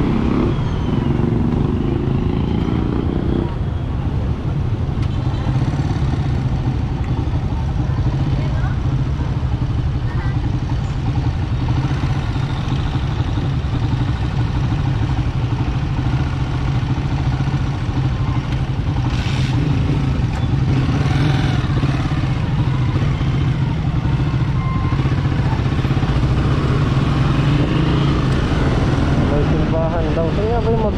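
Motorcycle engine running at a steady cruise under way through town traffic, with road and wind noise. For the first few seconds a second engine runs alongside.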